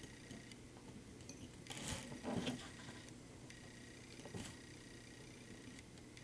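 Faint handling noises of plastic zip ties being worked on a multirotor frame: a few soft clicks and rustles, the clearest about two seconds in and again about four and a half seconds in, over a steady faint hum.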